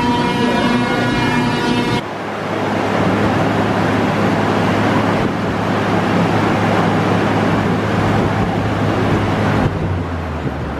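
Brief music, then about two seconds in a loud, steady rush of wind from a hurricane simulator's blowers, with a low steady hum under it, simulating 74 mph hurricane winds inside the booth.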